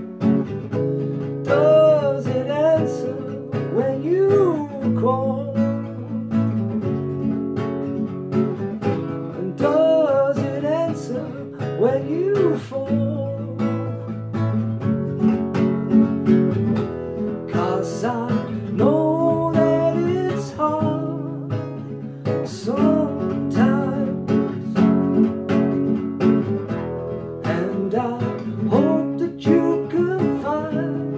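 Nylon-string classical guitar strummed steadily in chords, with a man's voice singing along in long, wavering notes that come and go.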